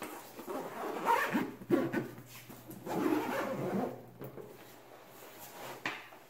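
Zipper on a fabric backpack being pulled, with the bag rustling as it is handled, in two main stretches about a second in and around three seconds in.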